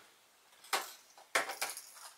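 A few sharp clicks and clatters of hard plastic, as lure packaging is handled: one a little after the start, then a quick cluster near the end.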